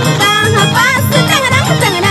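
Huayno band playing an instrumental passage: a violin melody with vibrato over a steady low beat about twice a second.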